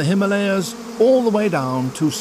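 Honeybees buzzing close up at the hive entrance. Their drone rises and falls in pitch as individual bees fly past.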